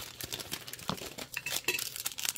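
Foil wrapper of a baseball card pack crinkling, with cards sliding and shuffling, as the cards are pulled out of the opened pack; irregular small crackles.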